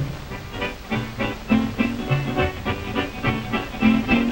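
Vintage jazz dance-band music from an old film soundtrack, with a steady, regular beat.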